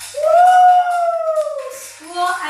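A woman's long, drawn-out 'ooooh' vocal exclamation, held on one voice for nearly two seconds, its pitch rising slightly and then slowly falling.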